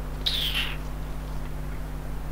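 A single brief high-pitched chirp about a quarter second in, falling slightly in pitch, over a steady low hum.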